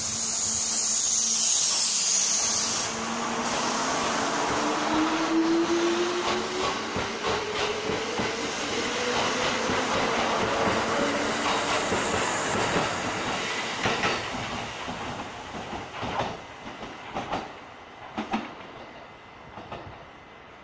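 Kintetsu 12410 series limited express electric train pulling out of the station. A hiss at the start gives way to a whine that rises steadily in pitch as the train gathers speed. Wheels click over the rail joints as the last cars pass, and the sound fades toward the end.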